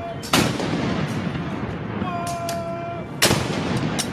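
Two cannon shots from a saluting battery of 3-inch M5 anti-tank guns firing blank rounds. Each is a single sharp boom with a short trailing echo, about three seconds apart, the timed interval of a 21-gun salute.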